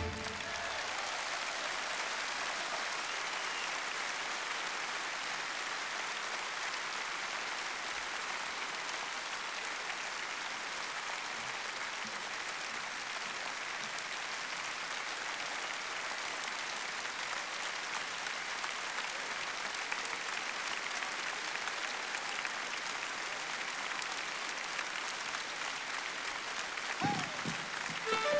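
A large concert audience applauding steadily, a long ovation after a song ends.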